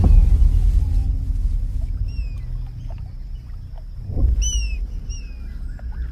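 Film soundtrack wilderness ambience: a few short, high, descending bird chirps over a steady low rumbling drone, which swells loudest at the start and again about four seconds in.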